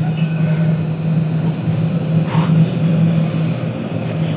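Tram cabin interior: the steady low hum of a moving tram, with a brief rush of noise about halfway through.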